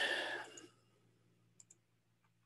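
A breathy exhale fades out over the first half second. Then come two faint, quick computer-mouse clicks about a second and a half in.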